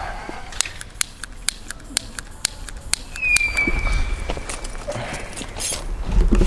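Quick footsteps on stone paving: a run of sharp clicks, about three to four a second, with a short falling whistle about three seconds in.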